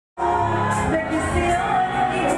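Live pop song through a PA: a singer singing into a microphone over amplified band or backing music with a steady bass and cymbal strokes, cutting in abruptly just after the start.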